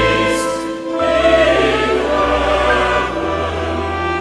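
Large mixed choir singing held chords with instrumental accompaniment, the bass note moving to a new pitch about a second in and again after about three seconds.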